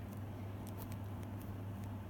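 A few faint clicks and light handling noises as objects are set upright on a table, over a steady low hum.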